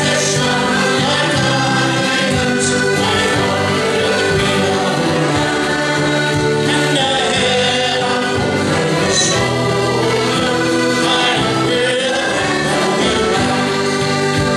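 Live folk band playing a lively tune on button and piano accordions, acoustic guitar and bodhrán, with steady held accordion chords.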